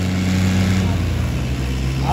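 Two Ghazi 480 tractors' diesel engines running hard under full load as they pull against each other in a tractor tug, with a steady low drone that shifts in pitch about a second in.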